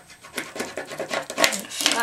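Bone folder rubbing and scraping over clear tape on a cardstock strip laid on a cutting mat, smoothing the tape down: a run of short scratchy strokes, with one sharper knock about one and a half seconds in.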